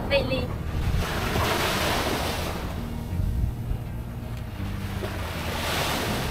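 Small waves breaking and washing up on a sandy beach, with wind buffeting the microphone.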